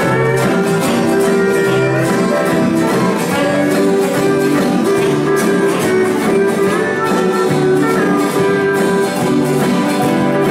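A live country band playing an instrumental passage without singing: guitars strumming a steady rhythm under long held lead notes.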